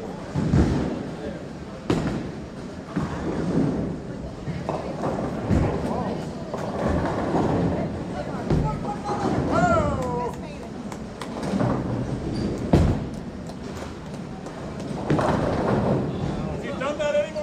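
Bowling alley din: sharp crashes of pins and thuds of balls on several lanes, coming every few seconds, over a constant background murmur of voices.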